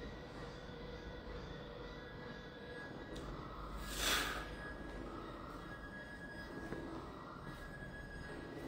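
Faint background music with a steady low hum, and one short hissing burst about four seconds in, as the chest press is pushed out.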